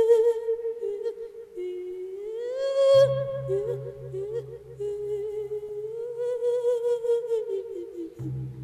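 A Buddhist monk singing a lae, a sung sermon, in long drawn-out wavering notes without words; his pitch slides upward about two seconds in. From about three seconds in a low tone pulses evenly, about three times a second, under the voice, and it stops just before the end.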